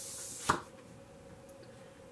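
Oracle cards rubbing against each other in a brief hiss, then a single sharp tap about half a second in as the cards are handled.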